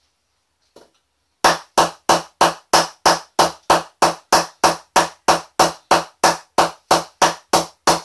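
Wooden bat mallet knocking the face of a new English willow cricket bat in quick, even strikes, about three a second, starting about a second and a half in. It is a mallet test of the fresh, un-knocked-in blade, checking how it responds.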